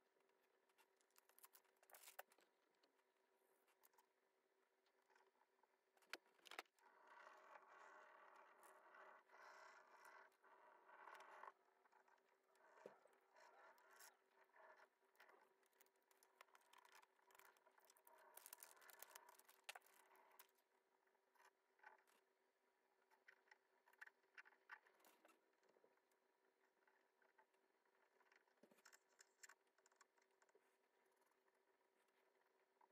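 Near silence with faint scraping and rubbing, a furniture rub-on transfer being burnished onto painted wood with a stick tool, its plastic backing sheet rustling, plus a few light clicks. The rubbing comes in two stretches of a few seconds each.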